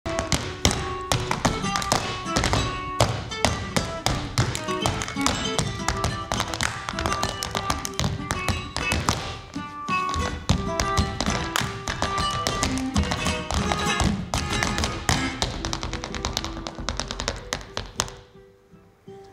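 Flamenco footwork: rapid, dense taps and stamps of dance shoes on a wooden floor, played over a small guitar being strummed and plucked.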